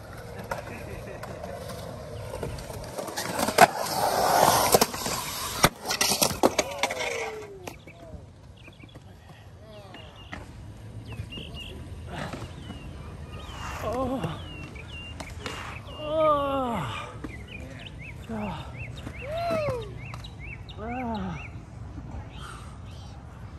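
Skateboard wheels rolling across a concrete bowl, then hard impacts of the board and a skater slamming onto the concrete a few seconds in. Afterwards the fallen skater lets out several pained groans.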